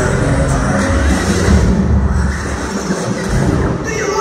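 Loud dance music with heavy bass played over PA loudspeakers in a large hall for a street dance routine.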